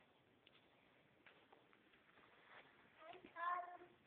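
Near silence, then a little after three seconds in a young child's short, high-pitched voice holding one note for about half a second.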